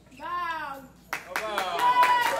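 A single voice calls out, then about a second in a group of children starts clapping and shouting together, getting louder.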